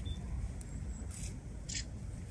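Low rumble of wind on a phone's microphone outdoors, with two brief faint rustling noises about a second in and shortly before the end.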